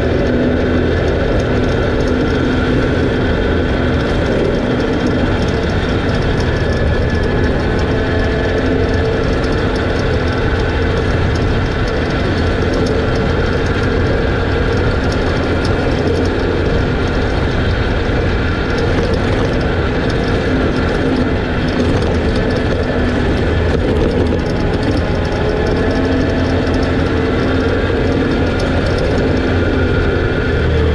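Can-Am Outlander 650 ATV's V-twin engine running at a steady cruising speed, its pitch wavering only slightly, over the rush of tyres on a dirt and gravel trail.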